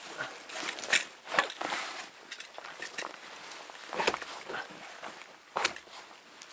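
Wooden roof poles being handled and shifted overhead: irregular knocks and scrapes of wood on wood, the sharpest about a second in and again near the end.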